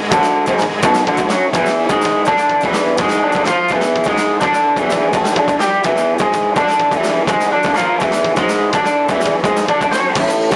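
A band playing rock music live: hollow-body electric guitar over a drum kit keeping a fast, steady beat.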